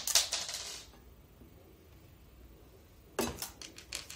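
Small white decorative pebbles clattering against each other and the glass floor of an empty tank as they are dropped in and spread by hand: a rattle in the first second, then quiet, then a few sharp clicks near the end.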